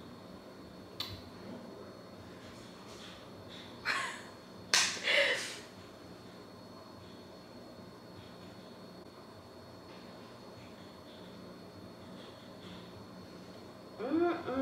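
Quiet room with small handling noises while bronzer is brushed on from a compact: a single sharp click about a second in, then a few short breathy bursts between about four and five and a half seconds in.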